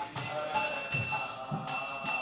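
Small brass hand cymbals (kartals) ringing on a steady beat, about two to three strikes a second, over sustained instrumental tones between sung lines of a devotional kirtan song.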